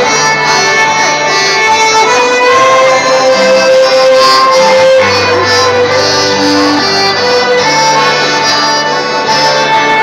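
Live folk dance music on accordion and guitar: a melody of sustained notes over held bass notes that change every second or two.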